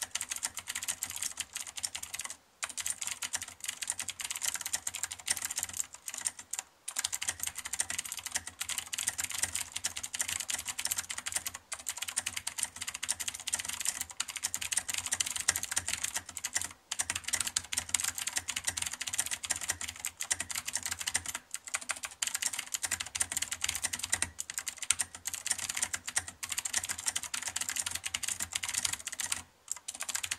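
Fast, continuous typing on a CM Storm Quickfire Stealth mechanical keyboard with clicky Cherry MX Green switches and tall Signature Plastics SA-profile keycaps: a dense stream of key clicks broken by a few short pauses.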